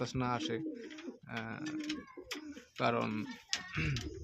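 Domestic pigeons cooing: a series of low coos, each about half a second long.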